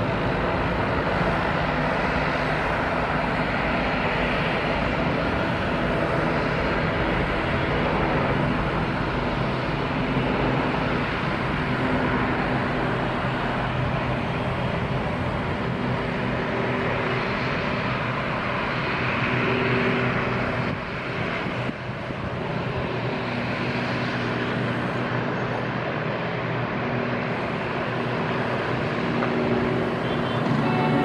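Boeing 747-400F freighter's four jet engines at takeoff thrust during the takeoff roll: a steady jet roar heard from across the airfield, briefly dipping about two-thirds of the way through.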